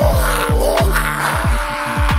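Instrumental stretch of a hip-hop beat: deep bass notes that drop in pitch, several a second, under a higher line that glides up and down.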